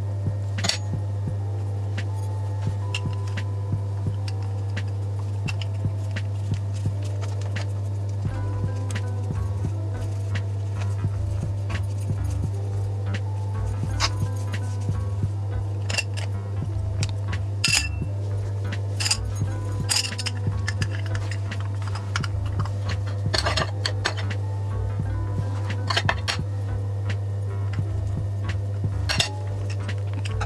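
Background music with sharp metallic clinks scattered through it, from a metal spoon and a hinged metal patty press knocking together as pastry patties are filled and pressed shut.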